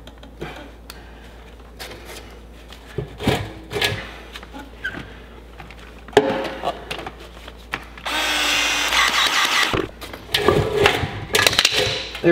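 Powered PEX expansion tool running for about two seconds, opening the end of the PEX pipe and its expansion ring so it can be pushed onto the fitting. Before and after it come scattered clicks and knocks of the pipe and fittings being handled.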